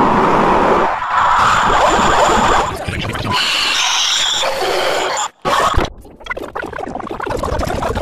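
Heavily distorted, overlapping audio from logo clips and cartoon voices, the layers smeared together and cut by sudden dropouts about five and six seconds in.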